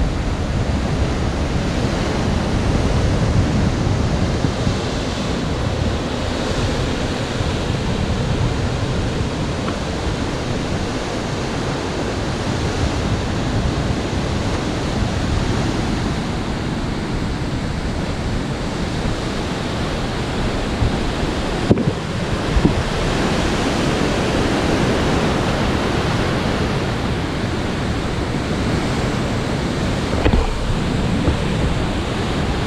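Ocean surf breaking and washing over sandstone rocks, a steady rushing noise, with wind blowing on the microphone. A brief sharp click a little past two-thirds of the way through.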